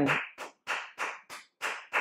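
One person clapping hands in a quick, even run, about four claps a second.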